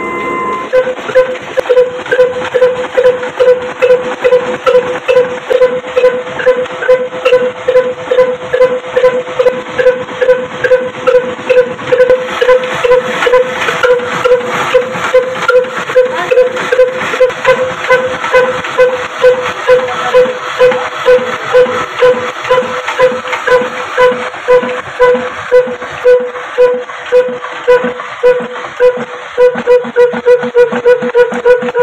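Old slow-running diesel engine under load driving a flour mill through belts and a line shaft. It beats evenly at about two to three beats a second, with a steady ringing tone that swells on each beat.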